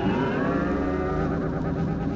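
Electric guitar in a live rock recording, holding one long loud note whose pitch sags and then climbs back.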